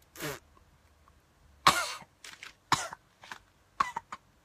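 A man coughing: one loud, harsh cough a little under two seconds in, followed by several shorter coughs.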